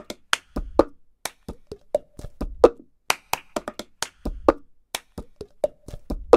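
Cup-game percussion: hand claps and taps with a cup knocked and slapped on a tabletop, in a pattern that repeats about every two seconds with a deeper thump each time.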